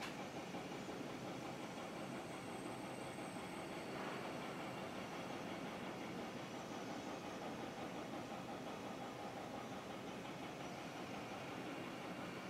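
Steady background noise: a continuous low hum with hiss, unchanging throughout.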